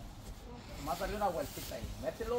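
A short stretch of indistinct talking about a second in, followed by a brief hiss.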